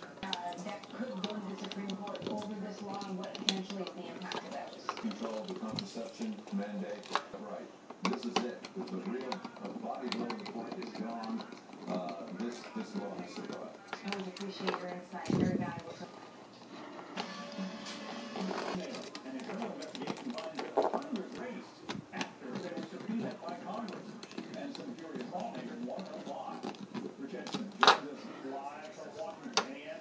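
Television playing in the background: talk with music under it. Now and then small sharp clicks come from handling the thermostat wires and screws, the loudest near the end.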